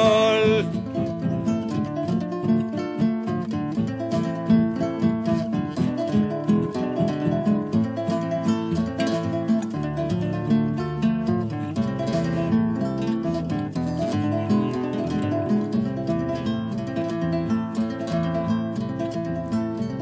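Instrumental guitar interlude in a candombe song: acoustic guitar strummed and plucked in a steady, driving rhythm. A held, wavering sung note from the previous verse ends in the first second.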